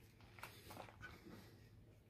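Near silence, with a faint click about half a second in.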